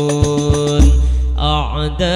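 Hadroh albanjari music: a male voice holds a long ornamented note on a vowel into the microphone, sliding and wavering in pitch near the end, over terbang frame drums. Deep drum booms fall a few times in the first second, with sharp hand slaps on the drum heads.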